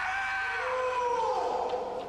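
Kendoists' kiai: long, drawn-out shouts held for about two seconds, fading near the end, as the bout opens.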